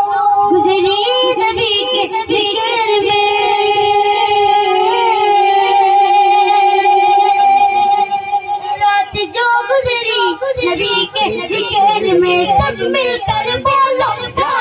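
A boy singing a naat unaccompanied into a microphone through a PA system. He holds one long, slightly wavering note for about eight seconds, then moves into quicker ornamented phrases.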